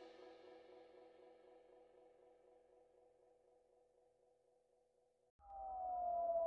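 Background music fading out into near silence, then a new electronic track fading in near the end with a slowly falling tone.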